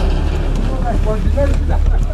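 Wind buffeting the camera microphone as a low, steady rumble, with men's voices talking faintly over it partway through.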